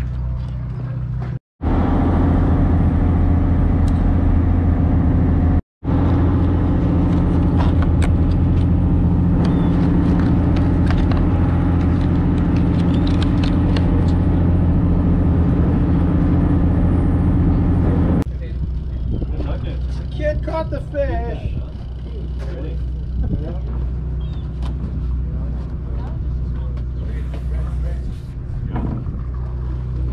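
A boat engine drones steadily, cut by two brief gaps of silence in the first six seconds. About eighteen seconds in it drops quieter and faint voices come through.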